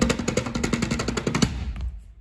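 Hands drumming on the wooden seat of a chair, a fast roll of about a dozen strikes a second that fades out near the end.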